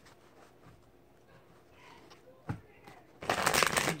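A deck of cards being shuffled by hand: a single sharp click about two and a half seconds in, then a quick, loud run of riffling card noise near the end.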